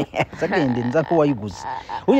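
A person's voice in animated exclaiming or talk, with short voiced runs that slide up and down in pitch.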